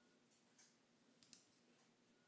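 Near silence with a few faint computer-mouse clicks: one about half a second in, then a quick pair a little past one second.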